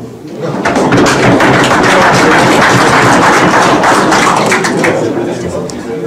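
Audience of diners applauding, many hands clapping together; it swells up about half a second in, holds steady and tapers off near the end.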